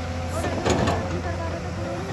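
Hyundai crawler excavator's diesel engine running steadily under load as it digs. A brief clatter of the bucket scraping soil and stones comes about half a second to a second in.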